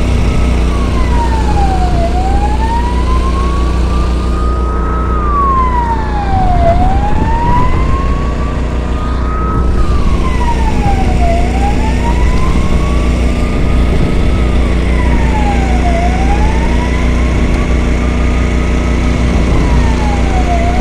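Emergency vehicle siren in a slow wail, rising and falling about every four and a half seconds, over a vehicle engine running steadily close by.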